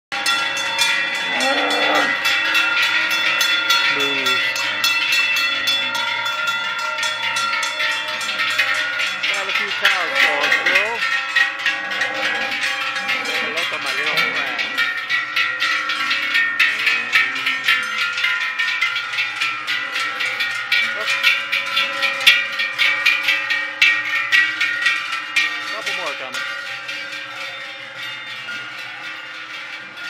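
Many large cowbells hung on a herd of cattle, clanging continuously and overlapping as the cows walk past; the ringing thins out near the end.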